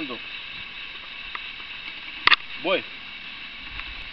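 Two sharp clicks in quick succession a little past halfway through, over a steady background hiss.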